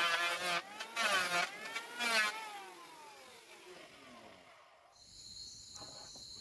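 Electric hand planer cutting along a teak plank, its motor pitch sagging and recovering about once a second as the blade bites, then winding down and stopping about three seconds in. Faint steady cricket chirping comes in near the end.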